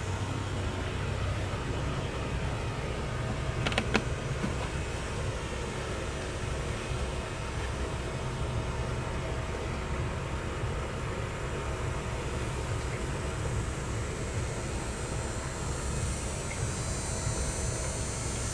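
Steady low outdoor rumble with a single sharp click about four seconds in.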